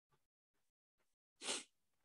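Near silence, then one short, sharp breath from a man about one and a half seconds in, just before he speaks again.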